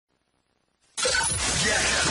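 About a second of silence, then a radio program's intro jingle cuts in suddenly. It opens with a loud, noisy crash-like hit over music.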